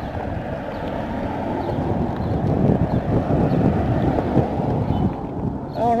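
Wind buffeting the microphone of a camera riding on a moving bicycle: a steady low rumble of wind noise that grows a little louder midway.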